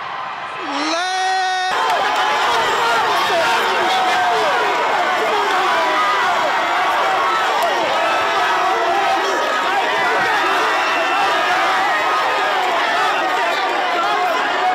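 Close-up crowd of players and fans celebrating a championship win, many voices cheering and shouting at once. It starts abruptly about two seconds in, just after a single held yell.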